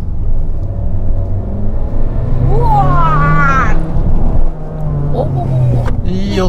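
Abarth 695's 1.4-litre turbocharged four-cylinder engine and exhaust pulling under load, heard from inside the cabin, its steady low note holding from about two seconds in to near the end. A man's wordless exclamation cuts in about halfway.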